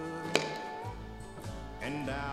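Country-style music with held, sustained notes, and a single sharp click about a third of a second in.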